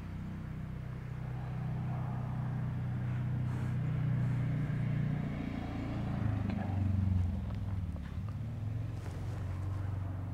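Low, steady engine drone from a motor vehicle that is out of sight, shifting in pitch for a few seconds past the middle.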